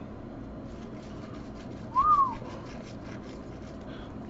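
Faint flicking and rustling of trading cards being handled, with a single short whistle-like note about two seconds in that rises and then falls in pitch.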